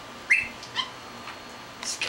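Pet parrots giving two short, high-pitched chirps, about a third of a second in and again just under a second in.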